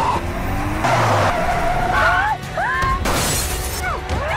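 Car tyres squealing in a skid, the squeal gliding up and down, then a crash with glass shattering about three seconds in.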